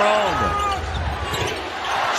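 Basketball sneakers squeaking on a hardwood court during live play: several short squeaks that slide in pitch, over the steady noise of an arena crowd.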